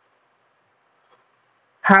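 Near silence during a pause in a man's talk, then his voice starts again near the end.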